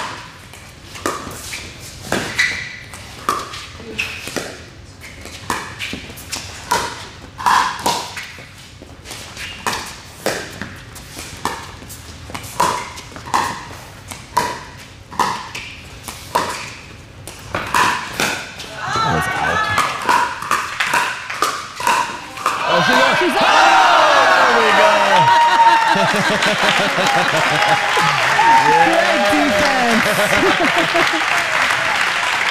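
Pickleball paddles striking a plastic ball in a long rally: sharp pops with a short ring, about one a second. As the point ends the crowd shouts and cheers, then bursts into loud applause and cheering.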